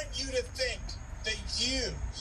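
Quiet speech, softer than the surrounding talk, over a low steady rumble.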